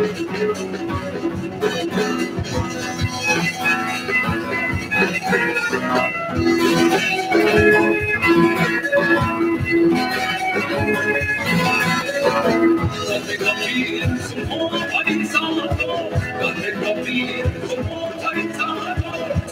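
A live band playing a song on stage through a PA: electric and acoustic guitars over a drum kit keeping a steady beat.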